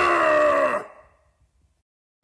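A man's long drawn-out shout, falling a little in pitch and fading out about a second in, followed by about a second of silence.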